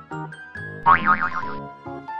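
Cheerful children's background music, with a short cartoon sound effect about a second in whose pitch wobbles quickly up and down several times.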